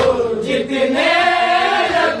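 Men's voices chanting a tarahi salaam, an Urdu devotional elegy, without instruments, the melody held and bending slowly in long phrases.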